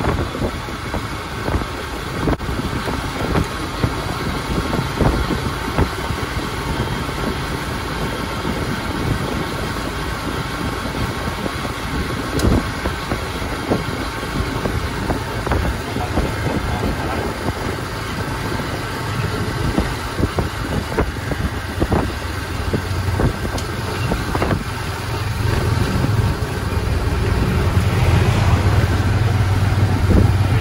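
Motorcycle tricycle's engine running with road noise, heard from inside its sidecar while riding. The engine note grows louder and steadier near the end.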